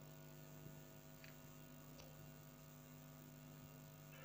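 Near silence with a steady electrical hum, and two faint clicks about one and two seconds in.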